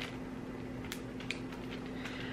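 Quiet room tone with a steady low hum, and a couple of faint clicks from handling a button in a small clear plastic bag.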